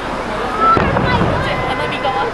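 A single firework bang about three quarters of a second in, a sudden low boom that fades over about half a second, with people's voices around it.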